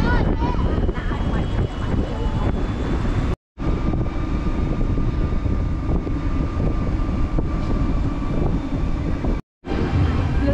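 Steady low rumble of wind and road noise from riding in an open-sided electric battery cart. The sound cuts out completely for a moment twice, about three and a half seconds in and near the end.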